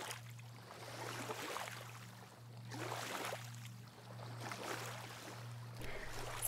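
Small Baltic Sea waves lapping on sand and stones, washing in and out in soft swells every second or two. A low steady hum runs underneath.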